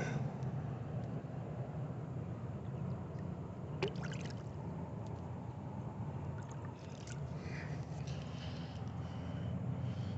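Shallow water lapping and trickling against the rocks at the water's edge, over a steady low hum. There is a single sharp click about four seconds in.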